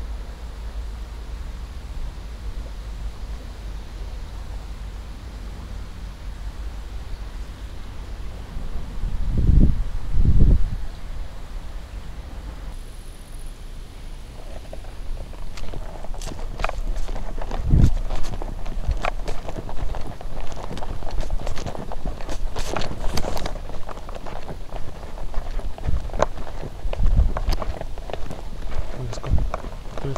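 Steady low rumble with two heavy thumps about ten seconds in; then, after a cut, footsteps on a sandy path, with many short irregular steps and ticks while the camera is carried along.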